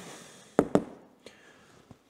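Two sharp clicks just over half a second in, then a few fainter ticks, from a marker pen and a cardboard sign being handled.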